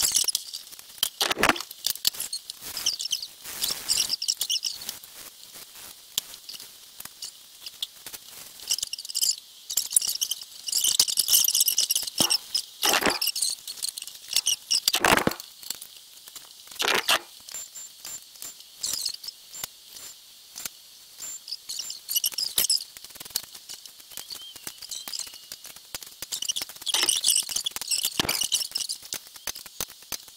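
Ratcheting torque wrench working the cylinder-head stud nuts of a small-block Ford 408, making fast runs of light metallic clicks with a few louder knocks between them. The sound comes from torquing the head down in steps.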